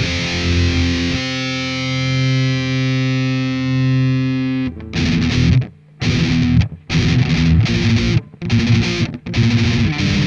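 Distorted electric guitar (Yamaha RGX 520 DZ) through a Mooer 002 JCM 900-style preamp pedal on its red distortion channel, with gain, treble and bass at maximum and mids at minimum, playing a metal riff. Fast chugging opens, then a chord rings out for about three and a half seconds and cuts off. After that come stop-start muted chugs with sharp silences between them.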